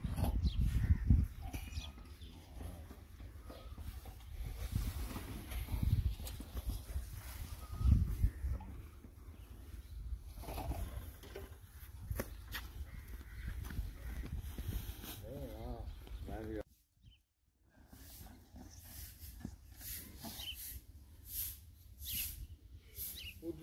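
Outdoor background sound: a low rumble on the microphone with faint voices in the distance. About fifteen seconds in comes a wavering animal-like call, then a brief silent gap.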